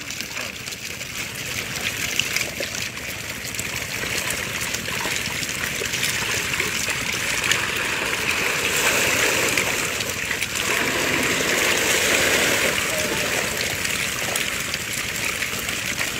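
Water splashing and sloshing as men wade waist-deep and haul a bamboo basket fish trap out of the water, growing louder through the middle.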